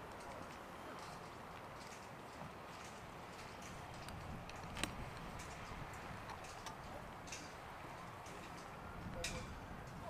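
Quiet open-air ambience broken by a few faint, sharp clicks and taps, the clearest about halfway through.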